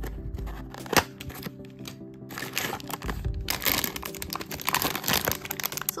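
Cardboard blind box being opened by hand, with a sharp snap about a second in, then a run of crinkling and tearing as the figure's foil wrapping is opened, over steady background music.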